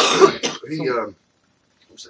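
A person clearing their throat: a harsh, cough-like rasp in the first half-second, followed by a short voiced sound.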